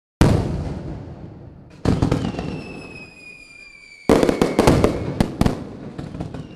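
Three loud sudden bangs, each dying away over a second or more, with a falling whistle between the second and third, and a quick run of sharp cracks after the third.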